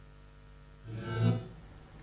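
Steady low electrical mains hum from the room's sound system. About a second in comes a single short pitched sound, about half a second long, that rises and falls away.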